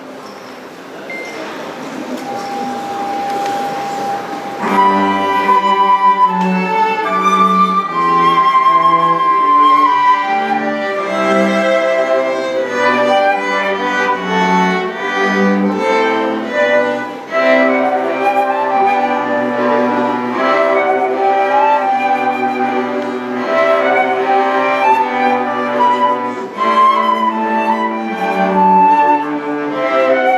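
A chamber quartet of flute, violin-family strings and cello playing a piece, the flute carrying the melody over the strings. The ensemble comes in about four and a half seconds in, after a few seconds of noise with a single held note.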